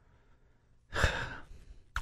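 A single audible breath from a talk-show host at a close microphone, about a second long, starting about a second in after a moment of near silence.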